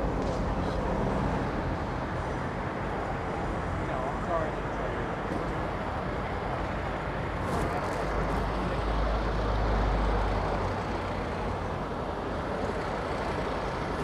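City street traffic: a steady wash of passing vehicles, with a deep engine rumble from a heavy vehicle swelling about eight seconds in and fading two or three seconds later. Faint voices of passers-by mix in.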